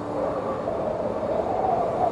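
A swelling, noisy whoosh in the soundtrack music, rising slightly in pitch and loudness toward the end: a transition effect building up to the next musical passage.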